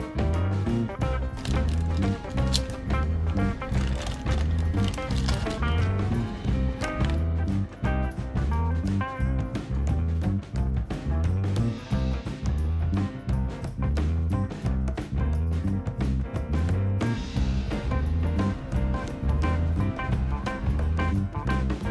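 Background music with a steady beat and a bouncing bass line.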